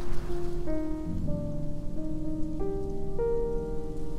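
Piano playing a gentle arrangement, with single notes and chords held and changing about every half second to a second, over a steady hiss.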